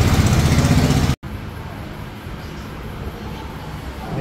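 A motor or engine running with a fast, even pulse. It cuts off suddenly about a second in, and only quieter background noise follows.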